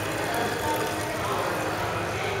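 Water from an indoor fountain's spouts running steadily into its stone basin, over a low hum and faint background voices.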